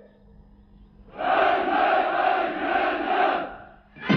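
A crowd of many voices shouting together, starting about a second in and lasting about two and a half seconds before fading away.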